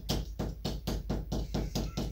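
Metal spoon tapping repeatedly on a chocolate Easter egg to crack its shell open, like cracking a boiled egg: a quick, even run of light taps.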